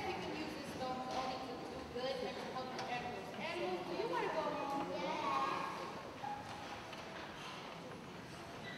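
Speech: young performers' voices speaking on stage, indistinct, heard across a large hall.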